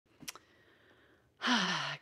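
A woman's audible sigh about a second and a half in: a breathy exhale with a voiced tone that falls in pitch, lasting about half a second. A faint click comes near the start.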